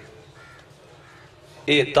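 A short pause in a man's sermon, with only faint room noise, before his voice comes back in strongly near the end.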